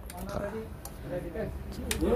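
Faint voices talking in the background, with a few short clicks; the sharpest comes just before the end.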